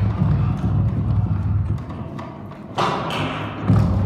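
Bowed wire strings stretched across large bent wooden planks (an 'orgue de bois'): a low, rough drone with a grainy texture, the planks resonating. It drops away for a sudden bright scrape with a falling high tone about three seconds in, then a thump near the end as the low drone returns.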